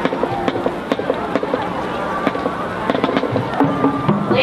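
Marching band drumline tapping out a steady time beat: sharp clicks about twice a second, with crowd chatter behind.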